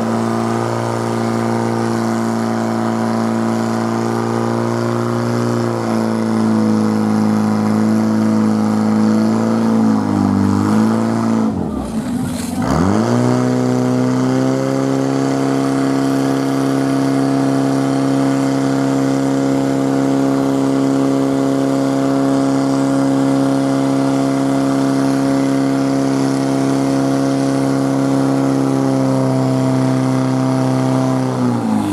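Portable fire pump engine running at high revs, pumping water to the attack hoses. About twelve seconds in, its pitch drops sharply and climbs back within a second or so, after which it holds a steady high pitch.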